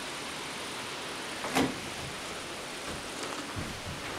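Steady low background hiss, with one short, sharp sound about one and a half seconds in and a few faint knocks near the end.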